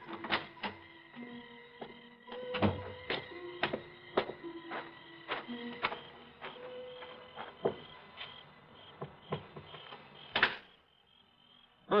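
Radio-drama sound effects: a string of irregular clicks and knocks, with short low musical notes sounding among them. A louder knock comes near the end.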